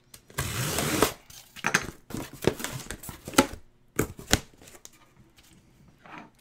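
Utility knife cutting open a cardboard box: one long scraping slice through the tape and cardboard, then about six short sharp rasps and snaps as the flaps are cut free and opened.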